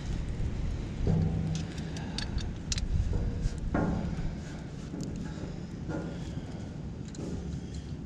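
Knocks on the Ford F-850 truck's rusty steel fuel tank: a few low, hollow thuds, the two loudest about a second in and near the middle, with small metal clicks between. The tank sounds pretty dry, nearly out of fuel.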